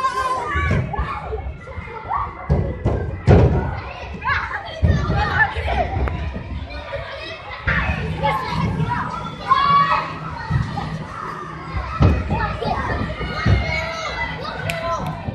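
Many children's voices chattering and calling out in a large echoing indoor hall, with a series of dull thuds scattered through.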